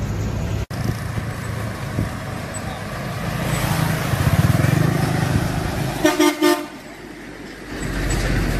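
Truck engines rumbling as loaded flatbed trucks pull past, growing louder about halfway through. A vehicle horn sounds in a quick run of short toots about six seconds in.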